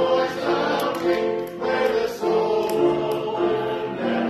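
A small church choir singing a hymn, several voices together in chords, with notes held about half a second to a second each.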